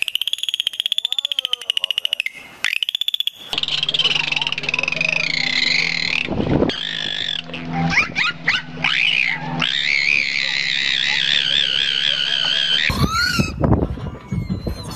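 Dolphins whistling and chattering: high, warbling whistles, several overlapping, over a fast pulsed buzz in the first few seconds. Short rising chirps come a little past the middle, with a steady low hum underneath.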